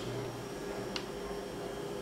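Quiet room tone with a faint steady hum, and one faint click about a second in.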